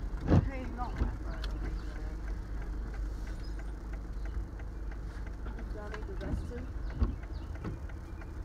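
Van engine running, heard from inside the cab as a steady low hum, with a few brief snatches of voices.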